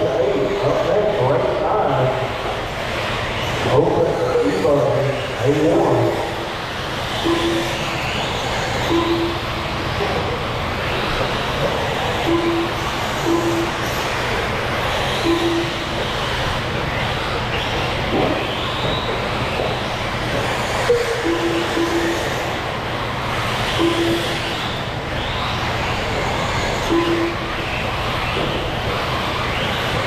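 Electric 1/8-scale RC buggies racing on an indoor dirt track: a steady mix of motor whine and tyre noise, with people talking over it in the first few seconds. Short single-pitch beeps recur every one to three seconds, typical of a lap-timing system scoring cars as they cross the line.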